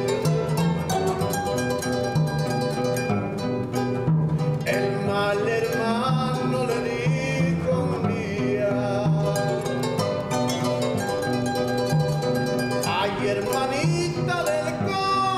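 A harp played solo in a steady, repeating rhythm, with a plucked bass figure under the melody. A man sings a line of a corrido over it about five seconds in and again near the end.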